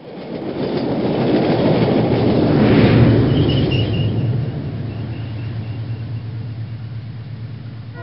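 A train passing: a rumbling rush that starts suddenly, swells to its loudest about three seconds in, then slowly fades, with a string of faint high chirps as it goes by.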